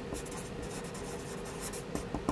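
Sharpie felt-tip marker writing on paper: the tip rubs across the sheet in short strokes, in a group near the start and another near the end.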